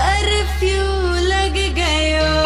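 A Hindi song: a solo voice singing a bending, ornamented melody over a steady low bass.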